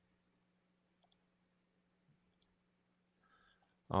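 Near silence: faint room tone with a steady low hum and two faint clicks about a second and a half apart. A man's voice starts at the very end.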